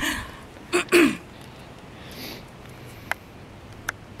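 A woman's brief laugh, two quick bursts falling in pitch about a second in, then a quiet outdoor background with two faint clicks near the end.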